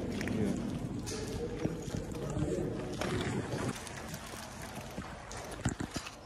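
Indistinct chatter of people talking nearby, under a low rumbling background noise; the voices die down about three and a half seconds in, leaving the background noise and a few light knocks near the end.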